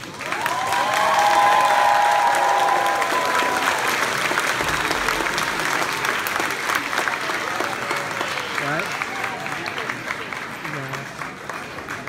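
Audience applauding and cheering after a children's song. The clapping swells suddenly just after the start, with a long high-pitched whooping cheer over it for the first few seconds, then carries on steadily with scattered shouts and voices.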